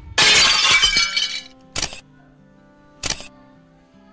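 Intro sound effects: a loud shattering crash lasting about a second, then two short clicks a little over a second apart, over a soft music bed.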